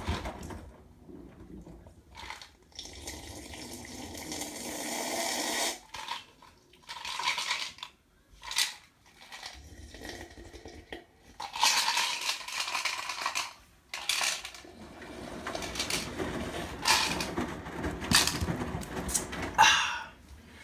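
Front-loading washing machine on a delicates cycle: wet clothes tumbling and water sloshing in the drum in irregular surges, with several sharp clicks and knocks.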